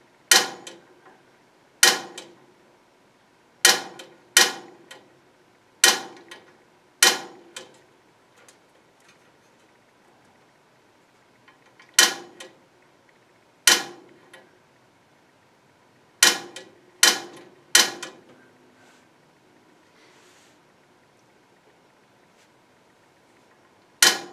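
Piezo spark igniter of a gas log fireplace clicking about eleven times in irregular groups, each a sharp snap with a short ring, while the pilot light is being lit and has not yet caught.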